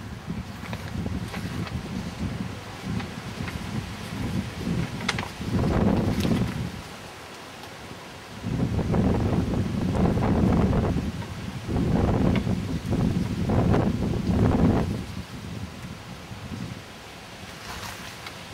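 Wind buffeting an outdoor camera microphone, a low rumble that rises in three gusts, the longest and strongest in the second half.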